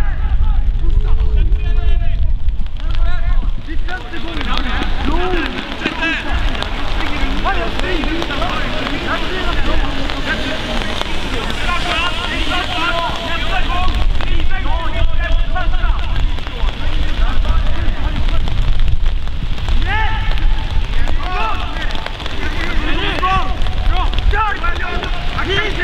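Players' voices calling and shouting across a football pitch, scattered and overlapping throughout, over a constant low rumble of wind on the microphone.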